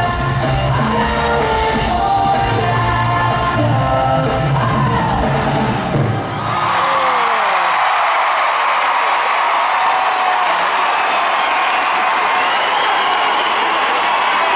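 Live pop music with a heavy bass plays loud through an arena sound system and stops abruptly about six seconds in, giving way to a large crowd cheering and screaming, with a few whoops.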